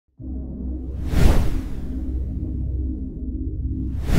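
Logo intro music: a steady low bass drone with a whoosh swelling up and falling away about a second in, and another whoosh starting near the end.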